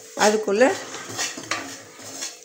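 Steel ladle scraping and stirring wheat flour in a stainless-steel kadai, metal grating on metal. A loud squeal that bends in pitch comes in the first half second, then softer scrapes follow.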